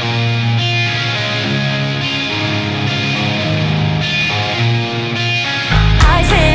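Rock song playing: an electric guitar intro picking out notes and chords, then the full band comes in loudly near the end.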